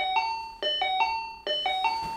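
Electronic intercom doorbell chime rung over and over. Each ring is a lower note followed by a higher one, repeating a little faster than once a second.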